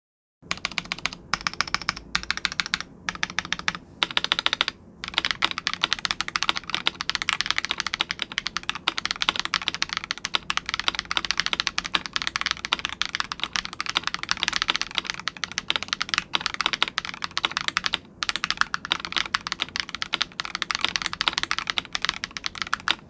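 Typing on a custom Idobao ID80 Crystal mechanical keyboard with Divinikey Oni linear switches, a polycarbonate plate, PE foam and Drop DCX ABS keycaps: a dense stream of keystroke clacks. It starts just after a brief silence, with a few short pauses in the first five seconds and one more past the middle.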